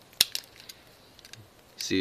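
A sharp metallic click, then a few lighter clicks, as a folding pocket knife is handled.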